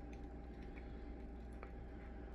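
Faint small clicks and handling noises of a hot sauce bottle's cap being worked open by hand, over a low steady hum.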